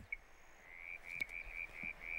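A frog calling: a rapid run of short, high notes, about six a second, over a faint background hiss.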